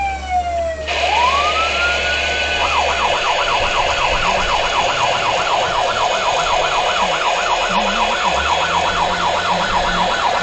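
Federal Signal Omega 90 electronic siren on a responding fire vehicle. A falling wail ends about a second in and a rising sweep follows; just under 3 s in it switches to a fast yelp, sweeping up and down about four times a second. The vehicle's engine hums low underneath.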